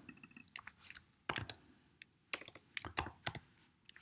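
Faint computer keyboard typing: scattered keystroke clicks in a few short clusters as a search word is deleted and a new one typed.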